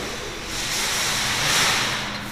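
Rushing hiss on the camera microphone, handling or rubbing noise, that swells about half a second in and fades by the end as the camera is swung round the machine.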